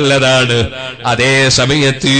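A man's voice preaching in a drawn-out, chanted delivery: a long held note, a brief dip about a second in, then a phrase that rises and falls in pitch.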